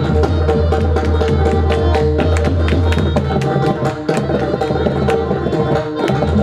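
Pakhawaj played in a fast solo passage: rapid dense strokes on the treble head over a deep, sustained boom from the bass head. A harmonium holds a steady repeating melody underneath.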